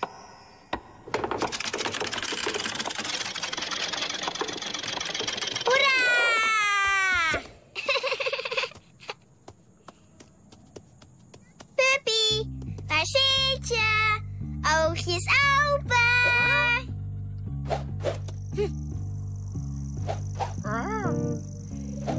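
Cartoon soundtrack: a long whooshing slide effect ending in a falling glide, then after a lull a bouncy tune with a repeating bass line, under short wordless vocal sounds and arching pitch glides.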